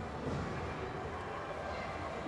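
Indoor ice rink ambience: a steady hum and hiss with faint voices in the background.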